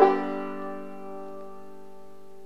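Recording King RK-R20 five-string banjo's final chord, struck once and left to ring out. It fades over the first second, then sustains quietly.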